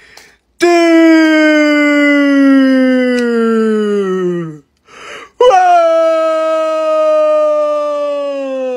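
A man's voice holding a long, loud wailing note that slowly falls in pitch, then a quick breath about five seconds in and a second long note that again sinks slowly.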